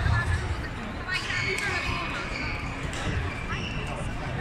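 Busy indoor sports hall with short squeaks of court shoes on the floor, dull low thumps and background voices.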